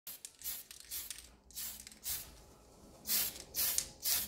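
Aerosol can of surfacer spraying in short hissing bursts, about seven in four seconds, the last two longer and louder.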